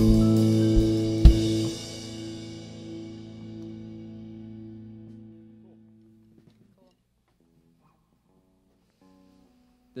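Rock band finishing a song: electric guitars hold a chord over the drum kit, and a final sharp drum hit comes about a second in. The chord then rings out and fades to near silence over the next few seconds.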